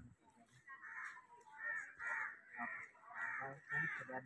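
Crows cawing, a faint series of short, repeated caws, roughly two a second.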